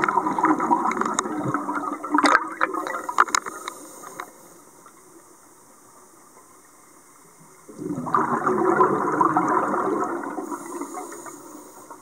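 Scuba exhalation bubbles from a regulator, heard underwater: one long bubbling exhale that breaks into crackling pops and dies away about four seconds in, then a quiet pause, then a second exhale about eight seconds in that fades near the end.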